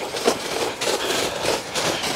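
Footsteps and rustling on snowy, grassy ground: an irregular scuffing and crunching over a steady noisy hiss.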